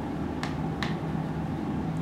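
Marker pen writing on a whiteboard: two short, faint strokes about half a second apart, over a steady low room hum.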